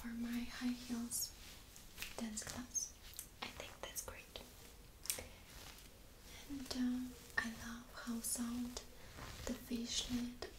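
Long acrylic fingernails scratching and tapping on a fishnet mesh t-shirt: a run of short, irregular scratchy strokes, with soft whispering.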